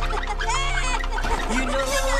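A Minion's high-pitched cartoon voice gives gliding, squeaky cries over background music.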